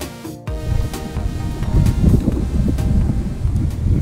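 Background music that stops abruptly about half a second in, then wind buffeting the camera microphone: a gusty low rumble.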